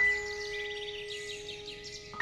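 Slow, sad piano music: a chord struck at the start and left to ring, slowly fading.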